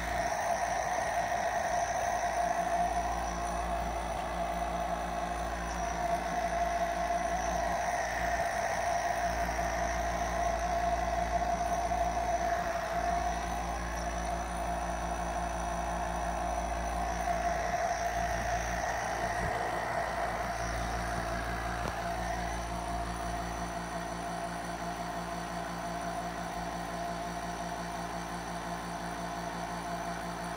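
Nebulizer compressor running with a steady, even hum as it mists medication into a face mask being worn.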